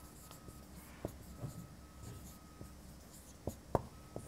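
Marker pen writing on a whiteboard: faint strokes and taps of the tip, the sharpest about a second in and two close together near the end.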